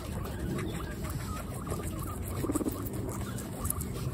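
Guinea pigs chewing and biting into fresh tomato slices: a steady run of small, quick, wet chewing clicks from several animals at once.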